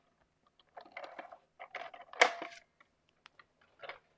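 Hands handling card stock and a plastic craft case on a cutting mat: scattered light rustles and clicks, with one sharper clack about two seconds in.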